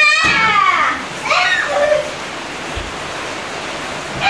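A young child's high-pitched squeal of excitement right at the start, and a second, shorter squeal about a second and a half in, during a pillow-throwing game. A steady hiss runs underneath.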